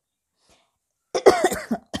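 A woman coughs about a second in: a short, loud burst of a few coughs, lasting under a second.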